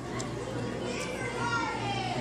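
Children's voices at play, with one high child's voice gliding downward in pitch in the second half.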